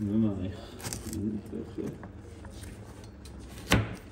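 Chef's knife chopping carrots on a plastic cutting board: a few scattered knocks of the blade on the board, the loudest a single sharp one near the end.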